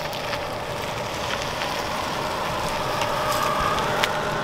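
Tesla Model 3 rolling up slowly at low speed: a steady tyre hiss with small crackles from the road surface, and a faint whine near the end.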